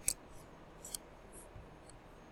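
Computer mouse clicking: one sharp click near the start, another just before one second, then two fainter ticks, over a low background hiss. The clicks come as a picture in the editor is clicked and dragged smaller.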